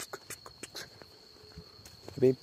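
Faint insect chorus: a steady high buzz, with a quick run of clicks, about six a second, that slows and stops about a second in.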